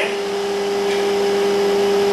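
Steady machine hum: a constant low drone with an even hiss over it, from a running motor or ventilation fan.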